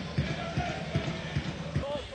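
Football stadium ambience: distant voices shouting from the stands and pitch over a steady crowd background, with a run of low, irregular thuds.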